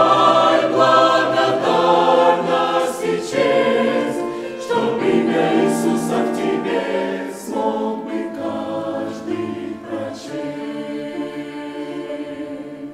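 Mixed church choir singing a Russian-language hymn in sustained chords, growing gradually quieter as the hymn closes.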